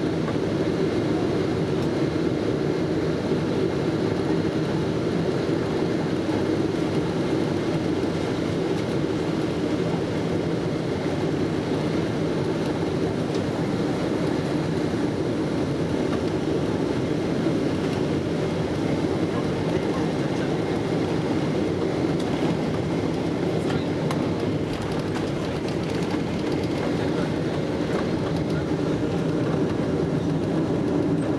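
Steady engine and rushing-air noise inside the passenger cabin of a Boeing 777-200ER on final approach, even and unchanging throughout.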